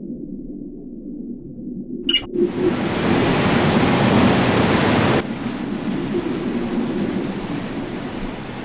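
Sound effect of water rushing in a torrent after a latch clicks open: a low rumble, a short click about two seconds in, then a loud rush of water that turns softer and lower about five seconds in.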